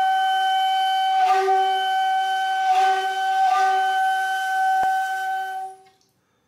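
Background music: a flute-like wind instrument holding one long sustained note, swelling a few times, then cutting off just before the end.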